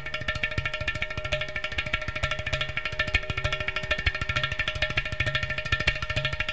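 Ten-string double violin bowed in a Carnatic piece in raga Abheri, over a steady drone, with rapid tabla and ghatam strokes running beneath it.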